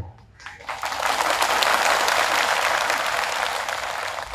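Crowd applauding, starting about a second in, running steadily and easing off slightly near the end.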